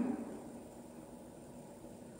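Faint room tone between spoken phrases: the echo of the last word dies away in the large sanctuary within about half a second, leaving a low, even hiss.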